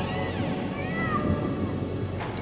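Horror rap instrumental at a break: the drums drop out under a low drone, and two rising-then-falling cat-meow sound effects play, one after the other.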